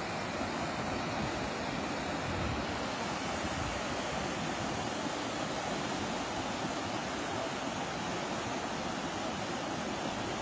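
Steady rushing noise with no clear rhythm or pitch, with brief low rumbles about two and a half and nearly four seconds in.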